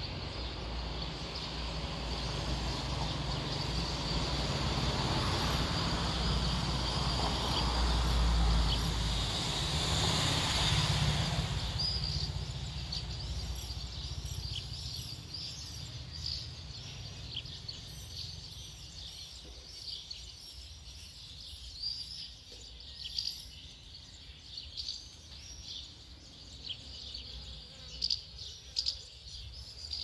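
Outdoor birds chirping and calling in short high notes, with a few louder sharp calls near the end. Over the first dozen seconds a broad rumble and hiss swells and fades away beneath them.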